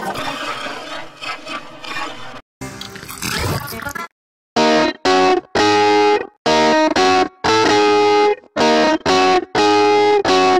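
An electric guitar riff with distortion, run through audio effects. For the first four seconds it is a noisy, garbled smear, then it drops out for half a second and comes back as clear chords chopped into short bursts, about two a second.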